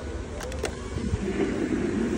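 Two quick clicks, then the electric motor of a deep-sea diver Halloween animatronic whirring and growing louder as the figure starts moving.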